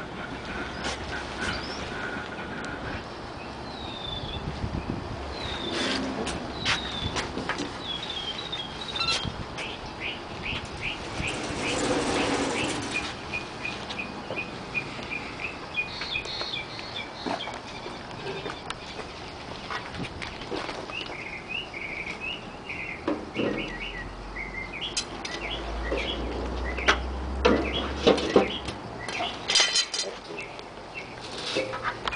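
Scattered metal clanks and knocks as a raku kiln is opened and the hot pot is moved into a trash can of combustible material, with a brief rushing noise about twelve seconds in. Small birds chirp in short calls throughout.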